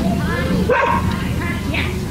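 A dog barking: a couple of short barks about a second apart, over people talking.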